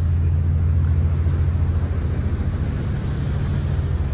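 Steady low engine drone of the 1959 Black Ball ferry Coho, heard from its open deck, under a light hiss of wind and water.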